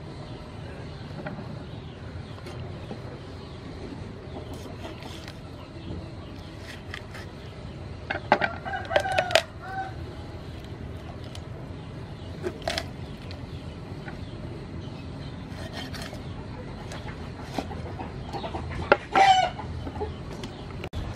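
A rooster crowing twice, first about eight seconds in and again near the end, over steady low background noise.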